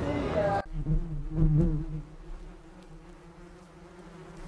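Bees buzzing: a low, wavering hum that is strongest for about the first second and a half, then drops to a faint drone.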